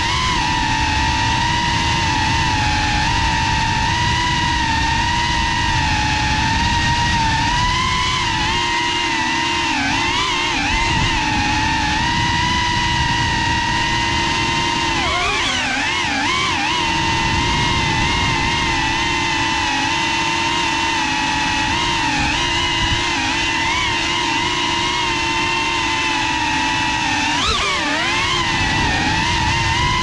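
FPV racing drone's motors and propellers whining at a steady pitch over a low rush of air. The pitch dips and swings back up briefly about ten seconds in, around sixteen seconds and near the end as the throttle changes.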